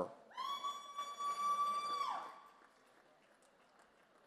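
A single high-pitched cheer from one person in the crowd: one long held note of about two seconds that falls away at the end.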